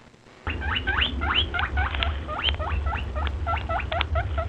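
A rapid run of short, high squeaks, each rising in pitch, about five a second, over a steady low rumble. They start about half a second in.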